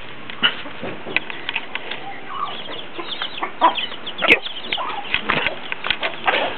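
Chickens at feed: a hen clucking and chicks peeping in many short, high calls. There is a single sharp click about four seconds in.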